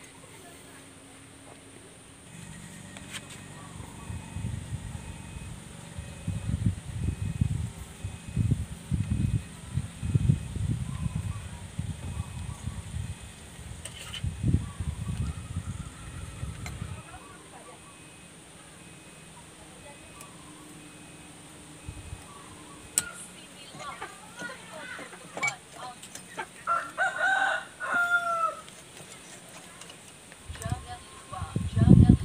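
A rooster crowing near the end, in curving, pitched calls. Before that, for roughly the first half, a run of low, irregular thumps and rumbling.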